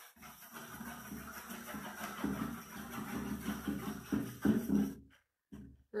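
Paintbrush scrubbing wet paint across a board in quick, repeated strokes. The sound drops out for almost a second near the end.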